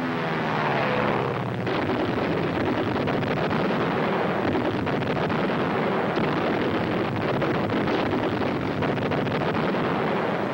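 A bomber's propeller engines drone steadily, a dense noisy sound with no clear pitch, heard during the bombing attack run.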